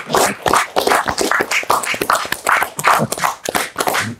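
A small group of people applauding: dense, irregular hand claps.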